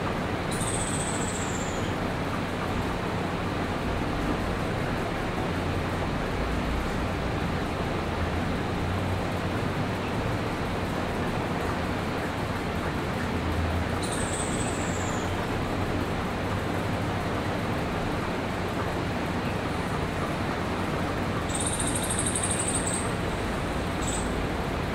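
Steady rushing background noise with a low hum. Three short, high whistles falling in pitch come through it: about half a second in, about halfway, and near the end.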